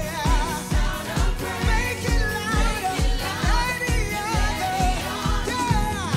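Live gospel praise singing: a group of singers on microphones leading a worship song with vibrato-rich voices over a band with a steady drum beat.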